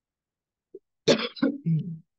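A person clearing their throat with a short cough: one sharp burst about a second in, followed by two shorter ones.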